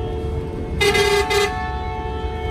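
Vehicle horn sounding two short blasts just under a second in, the first longer than the second, over a steady hum of the moving vehicle.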